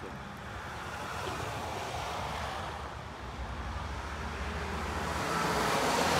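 Steady wash of road traffic passing on a main road, with wind on the microphone, growing a little louder near the end.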